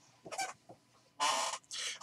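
A person's faint voice: a brief murmur, then two short breathy vocal sounds near the end.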